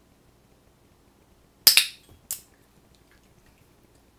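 Dog-training clicker clicked: two sharp clicks about half a second apart, marking the dog's hold of the dumbbell in its mouth.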